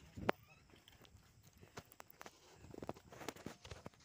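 Footsteps on a sandy dirt track behind a bullock cart, with scattered sharp knocks; the loudest is a single knock about a third of a second in.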